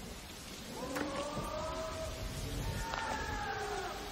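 Steady monsoon rain falling on a swamp. Over it come two long arching tones, the first about a second in and the second near the end.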